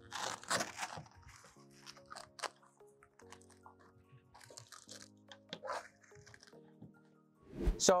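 Tent-trailer canvas and Velcro being pulled down and pressed into place: a loud rustling burst in the first second, then scattered small rustles and clicks. Faint background music with long held notes runs under it.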